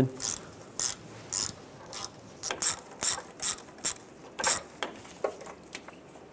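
Ratchet with an 8 mm socket backing out the bolt that holds the power steering lines to the steering rack: the pawl clicks in short bursts at uneven intervals.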